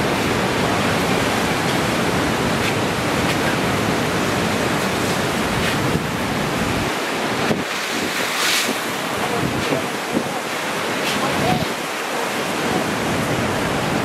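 Steady rush of ocean surf with wind blowing on the microphone; the low wind rumble drops away about seven seconds in.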